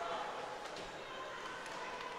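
Steady ice rink ambience during live play: crowd noise in the arena with skates on the ice.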